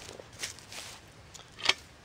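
Soft rustling of footsteps and handling on grass and dry leaves, then a short sharp click near the end from the folding steel target stand as it is worked to fold up.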